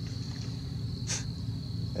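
Insects trilling steadily at one high pitch, typical of a dusk cricket chorus, over a low steady rumble, with one short hiss about a second in.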